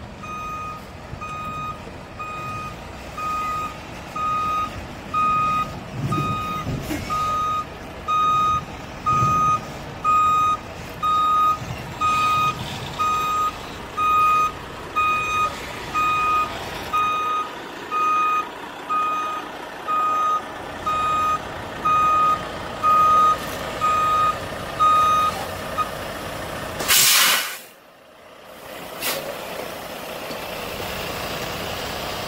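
Semi-truck's reversing alarm beeping about once a second over the running diesel engine as the tractor backs up; the beeps stop near the end, followed by a loud hiss of air and a second shorter one, the air brakes being set as the truck stops.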